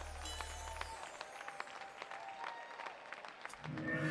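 A band's final low note held and stopping about a second in, followed by an audience clapping and cheering at the end of a jazz number.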